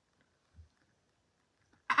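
Near silence: room tone, with one faint low bump about half a second in. Near the end a woman's voice breaks in suddenly and loudly as she exclaims that she has poked herself in the eye.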